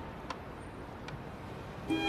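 Faint outdoor street ambience, a steady low background noise with a couple of small clicks, before string music comes in right at the end.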